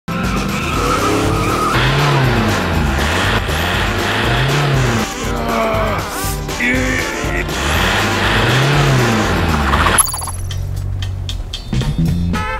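SUV engine revving up and falling back again and again as its wheels spin in snow, with music playing along. From about ten seconds in the revving stops and only music with a beat is left.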